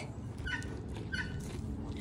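Low rubbing and rustling noise from goats pressing against the phone, with a faint short high chirp repeating about every two-thirds of a second in the background.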